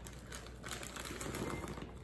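Blueberries shaken out of a plastic bag, dropping and clicking into a glass bowl, with the bag crinkling. A soft, irregular patter of small clicks.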